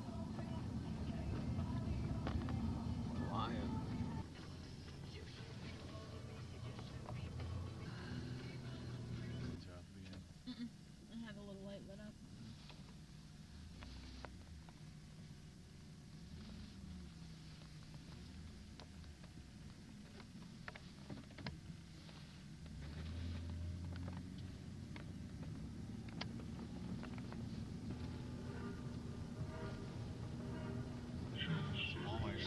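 Indistinct, unintelligible voices over a low rumble, louder in the first four seconds, quieter through the middle and louder again from about 23 seconds in.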